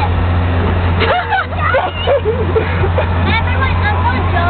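High-pitched young voices talking, without clear words, over a steady low hum.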